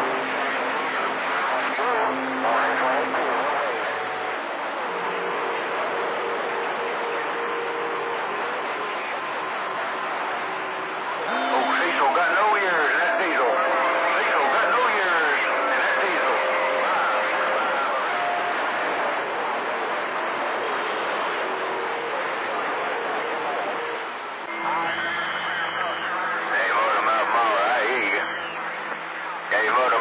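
CB radio receiving long-distance skip on channel 28: steady static hiss with faint, unintelligible voices buried in it and steady tones from other stations' carriers that come and go, its loudness shifting as the signals fade in and out.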